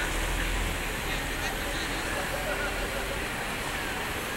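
Busy city street ambience: a steady hubbub of crowd chatter mixed with traffic noise, with a low rumble that eases after about a second.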